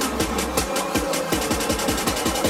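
Electronic dance music with a fast, steady beat and deep bass notes that drop in pitch.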